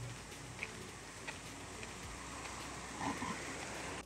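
Faint, steady outdoor city background noise recorded by a phone microphone, with a few scattered faint clicks.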